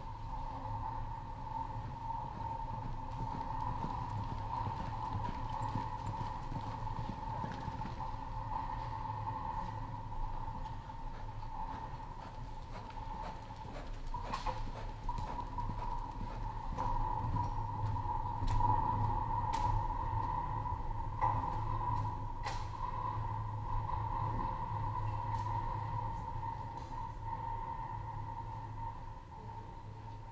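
Hoofbeats of a horse loping on soft arena dirt, over a steady hum. A few sharp clicks come through in the middle.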